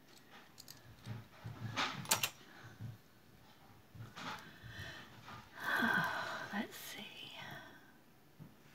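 Costume jewelry clinking and rattling as a hand sorts through a heap of metal chains, beads and earrings. A few sharp clicks come about two seconds in, and a longer jingling stretch follows about halfway through.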